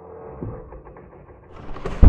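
A cinematic sound-design riser: a muffled, low swell that builds and brightens in the last half-second, leading into a deep boom hit at the very end.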